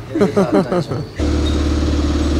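A motor vehicle engine idling, a steady low hum that cuts in abruptly a little past halfway through.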